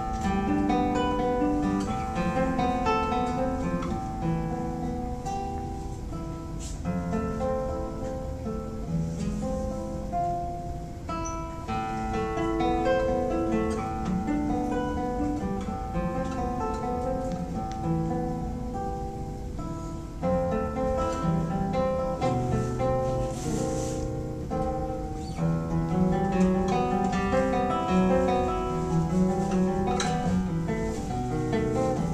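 Nylon-string classical guitar played fingerstyle: a simple beginner's piece, with a plucked melody over bass notes running on without a break.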